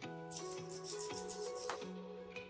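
Background music playing steadily, over a run of quick, rasping strokes from a hand pruning saw cutting through a bonsai branch.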